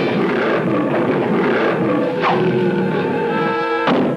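Cartoon sound effects over music: a giant monster's long roar, then a door slamming shut near the end.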